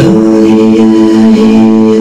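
Steel-string acoustic guitar chord strummed hard and left ringing, with a man's long wordless sung note that slides up slightly and is then held steady over it.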